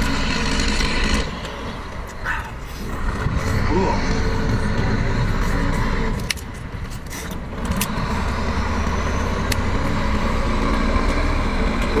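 An engine running steadily throughout, its level dropping twice for a second or two, with a few faint clicks over it.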